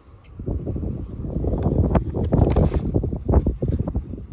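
Wind buffeting the microphone: a loud, gusty low rumble that swells and falls irregularly.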